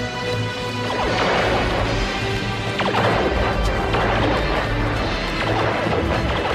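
Dramatic television-drama score, with loud crashing noises breaking in about a second in and again just before the three-second mark, their pitch sweeping downward.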